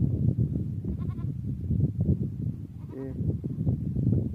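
Goats bleating, two short calls: a high thin one about a second in and a lower one about three seconds in, over a steady low rumble.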